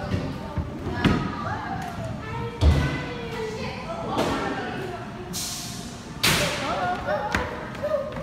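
Bowling ball set down on the lane with a heavy thud and rolling toward the pins, with a sharp crash about six seconds in. Voices and background music carry through the alley.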